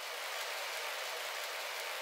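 Steady hiss of falling rain, a rain sound effect that has faded up just before and holds level.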